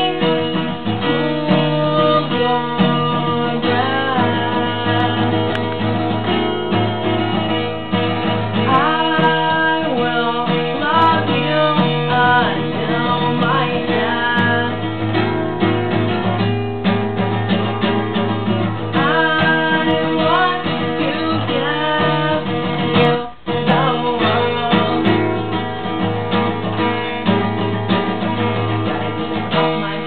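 Acoustic guitar playing an instrumental passage of a slow song, picked notes over held chords with some bending notes, and a momentary dropout about two-thirds of the way through.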